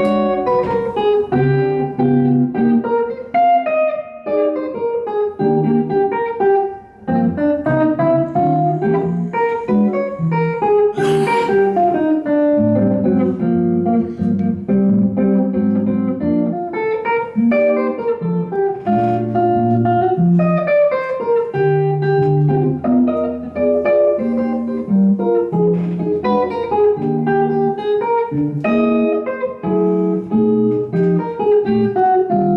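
Unaccompanied hollow-body archtop electric guitar playing jazz, mixing plucked chords with single-note melody lines. The playing briefly thins out about seven seconds in.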